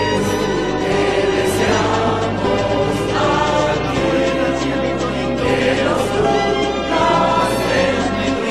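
Music: a choir singing sustained lines over an accompaniment, with a bass line that steps to a new note every second or so.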